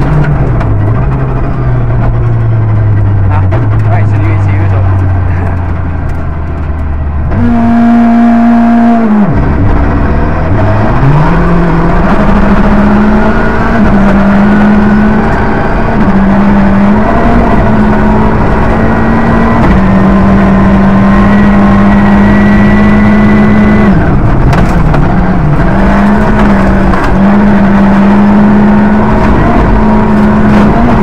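Rally car's engine heard from inside the cockpit, driven hard on a gravel stage over steady tyre and gravel noise. About eight to nine seconds in the engine note falls sharply and climbs back up, then holds high for the rest of the stretch with a few brief dips.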